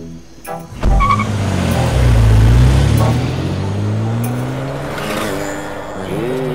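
A thump about a second in, then a car's engine revving, its pitch rising steadily over a few seconds as the Audi sedan pulls away.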